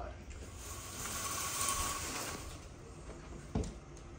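Venetian blinds being raised by their cord: the slats rattle and rasp for about a second and a half, followed by a single sharp knock near the end.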